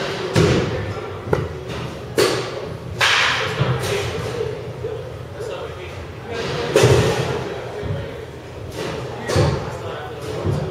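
Baseball bats hitting pitched balls in an indoor batting cage: a series of about six sharp impacts echoing in a large hall, the loudest about seven seconds in.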